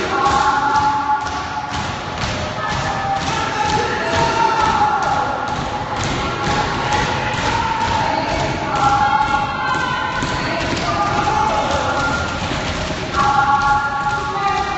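A group of voices holding long, overlapping tones that shift in pitch, over a steady rhythm of thumps, about three a second.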